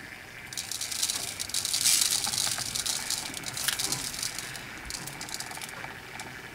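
Chunky glitter tipped off a plastic scoop onto an epoxy-coated tumbler, the loose flakes falling and pattering onto paper below. It is a fine hissing rattle that builds to its loudest about two seconds in and fades out by about five seconds.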